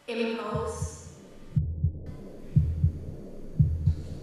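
Heartbeat sound: three double lub-dub beats about a second apart, starting about one and a half seconds in. A brief pitched sound with several overtones comes first, in the opening second.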